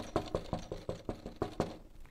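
Quick knocking on a hard surface, about ten raps at some six a second, stopping shortly before the end, acted out as a knock on a door.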